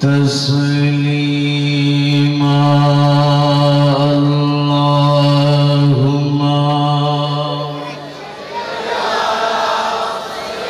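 A man's voice chanting through a microphone, holding one long, steady drawn-out note for about eight seconds before it fades into a rougher, noisier sound near the end.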